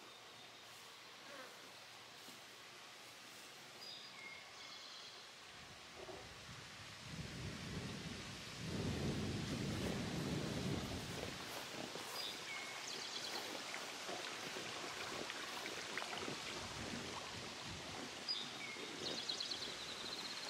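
Wind gusting over the microphone, picking up after several seconds and heaviest for a few seconds in the middle, with a few short bird calls at intervals.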